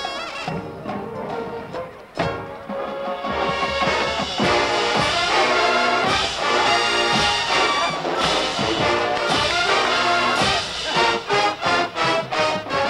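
Marching band brass playing a blues figure led by trumpets, with drum hits. The band swells louder and fuller about three to four seconds in.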